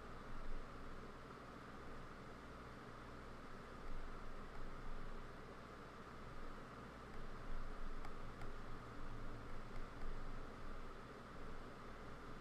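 Steady hiss and low hum of a computer microphone's background noise, with faint rustling and a couple of faint clicks about eight seconds in.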